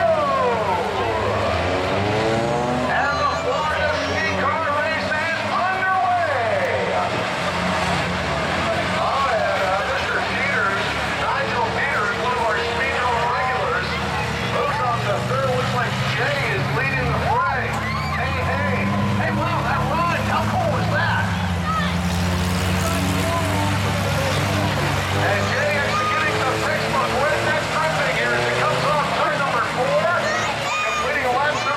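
Several racing cars' engines revving and droning together, pitches rising and falling, as the cars slide around the track on steel-plate 'skis' welded to rims in place of their rear tyres. Crowd voices mix in.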